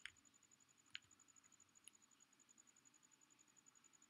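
Near silence with three faint, short clicks about a second apart: a computer mouse clicking to advance presentation slides.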